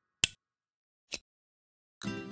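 Two short, sharp snap-like clicks about a second apart, with silence between them.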